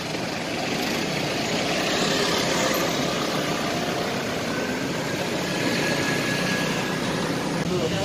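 Steady city traffic noise, with engines running, as a car pulls away and drives off down the road.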